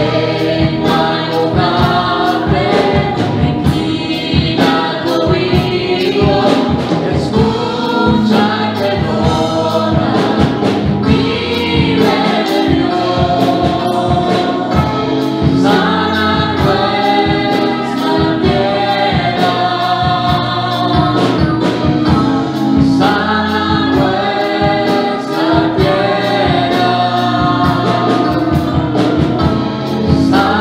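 Live gospel worship music: two women singing into microphones over instrumental accompaniment with a steady beat.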